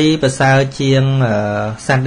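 A monk's voice speaking in Khmer, holding one syllable long and level for most of a second near the middle.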